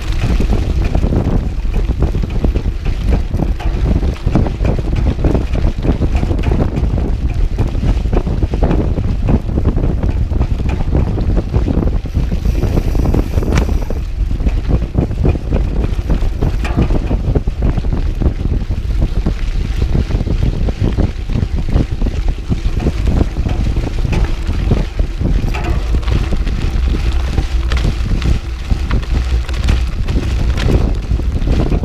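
Wind buffeting a GoPro action camera's microphone while a cross-country mountain bike is ridden at race pace on a gravel fire road, with a continual irregular rattle and clatter from the bike and tyres over the rough surface.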